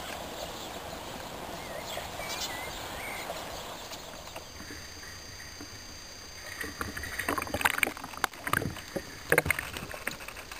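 Sea water splashing and sloshing around a camera at the surface as a spearfisher swims in a sea cave, in irregular sharp bursts from a little past halfway through. Before that, a steady hiss with a few faint chirps.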